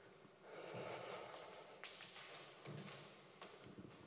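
Faint pause with a soft, breathy exhale about half a second in, followed by a few quiet rustles and small taps.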